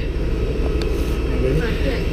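Steady low rumble of an airport apron bus's engine idling at its open doors, with faint chatter of people around it.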